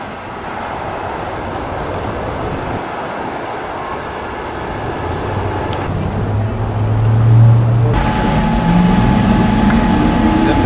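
Outdoor traffic noise with no speech. A low vehicle engine hum rises from about five seconds in. After an abrupt change about eight seconds in, an engine runs with a steady faint tone over it.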